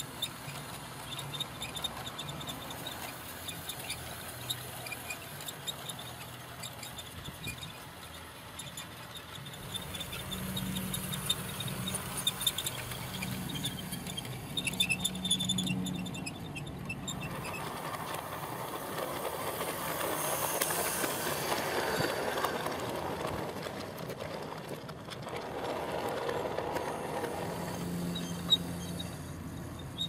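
00 gauge model train running on garden track: a low electric-motor hum with wheels clicking and rattling over the rails, getting louder for several seconds past the middle as the train passes close by.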